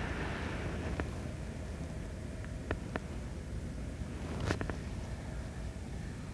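Steady low hum and hiss of an old recording's background, with a few faint clicks scattered through it.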